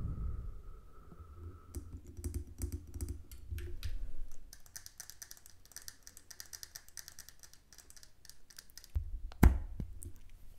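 Fast fingernail tapping on a glass candle jar, a dense run of light clicks, then one louder sharp clink of the glass lid near the end.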